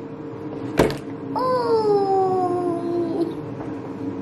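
A sharp knock just under a second in, then one long high-pitched vocal sound of about two seconds, like a drawn-out 'oooh', sliding slowly down in pitch. A steady hum runs underneath.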